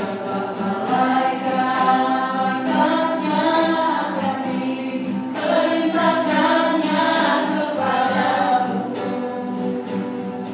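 A small mixed group of voices singing a scripture song together, accompanied by a strummed acoustic guitar.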